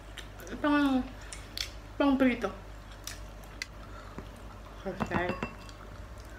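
Tableware during a meal: a few light clicks and clinks of dishes and a glass bowl, along with three short vocal sounds from the diners.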